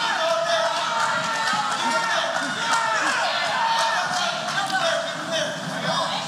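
Spectators' voices shouting and calling out over each other in a crowd hubbub.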